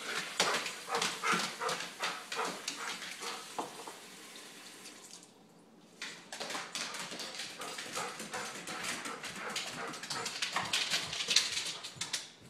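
An excited dog whimpering and yipping over a fast run of clicks as it scrambles about on a tiled floor. The sound drops away briefly about five seconds in.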